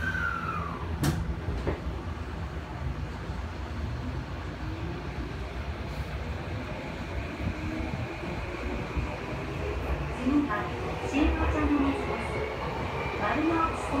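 Tokyo Metro Chiyoda Line subway train running, heard from inside the car: a steady low rumble, a falling whine in the first second and a faint whine that rises slowly near the end. An onboard announcement voice comes in from about ten seconds in.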